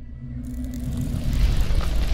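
Cinematic logo-intro sound effect: a low rumble with a held low note, then about half a second in a rush of noise that swells steadily louder, like a building fiery whoosh.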